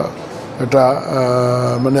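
A man's voice: a brief pause, then a long drawn-out hesitation sound held at one steady pitch for over a second before he speaks on.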